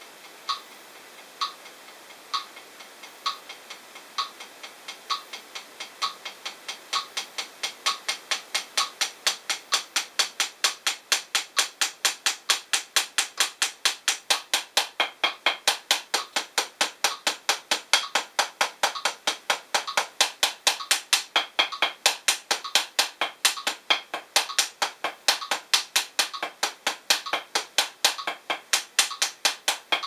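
A metronome clicking at 65 bpm, joined about six seconds in by 7A hickory drumsticks playing a single stroke roll in sixteenth notes on a P4 practice pad, alternating right and left hands at about four strokes a second. The strokes start soft and build to a steady, even level by about ten seconds in, with the click still heard under them.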